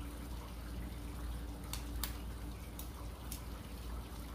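Steady rain falling, with a few faint sharp ticks in the second half.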